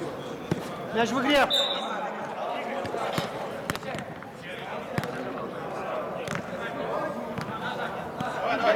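A football being kicked on artificial turf in a large indoor hall, sharp thuds scattered through with players' calls among them and one loud shout about a second in.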